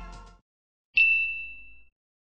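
Background music fading out, then a single bright chime-like ding about a second in that rings out and dies away over nearly a second, a logo sound effect.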